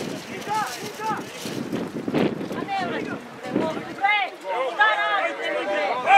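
Shouting voices at a football match over wind noise on the microphone. Near the end they swell into excited, overlapping shouting from several people.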